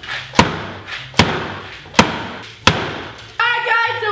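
Four sharp thumps about a second apart from a sealed jar of peanuts being struck while someone struggles to get it open.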